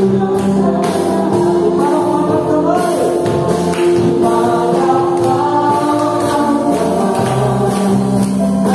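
Live praise band playing a Tagalog worship song: several voices singing together over drums, electric bass, acoustic guitar and keyboard. A long note is held through the middle, with drum strokes throughout.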